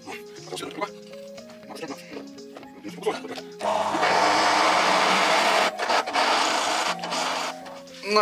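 Background music with stepping notes; about halfway through, a loud steady rushing noise joins for roughly four seconds, broken briefly twice, as a drill press bores through a steel plate held in a machine vise.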